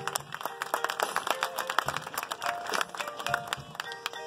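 Marching band playing a softer passage: many sharp, quick percussion strikes over scattered held notes.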